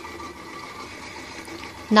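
Steady low background hum of room noise, with no distinct sounds.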